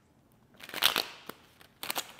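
Tarot cards being handled and sorted through: short rustling, snapping bursts of card against card. The loudest comes about a second in, with more quick flicks near the end.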